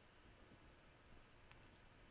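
Near silence, with two faint clicks close together about one and a half seconds in, from a die-cast HO-scale model steam locomotive being turned over in gloved hands.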